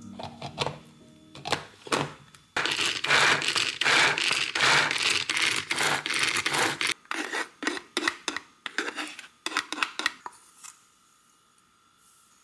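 Red plastic pull-string mini chopper mincing peeled garlic cloves. A few light clicks come first, then from about two and a half seconds in a loud, rapid rasping run of string pulls spinning the blades through the garlic, breaking into separate, slowing strokes that stop about ten seconds in.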